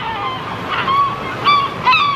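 Birds giving a series of short, repeated calls over the steady wash of surf.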